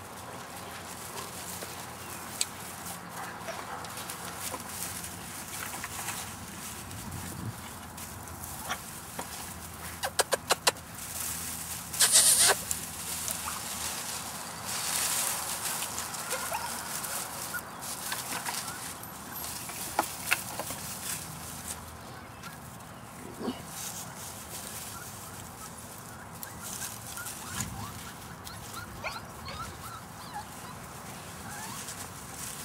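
A litter of puppies playing in grass and straw, with rustling, scattered clicks and knocks, and brief animal calls. A quick run of clicks comes about ten seconds in, followed by a loud rustling burst, the loudest sound here.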